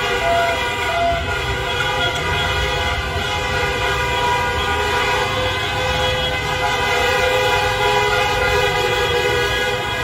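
Many vehicle horns held down at once: a continuous chorus of steady horn tones at several pitches over a low rumble.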